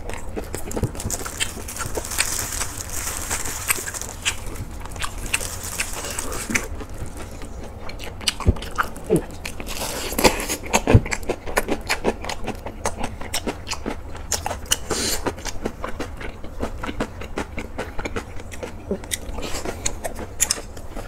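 Close-miked chewing: wet, crisp crunching of freshly made napa cabbage kimchi, irregular and continuous, with the loudest crunches about ten seconds in as a big bite is taken.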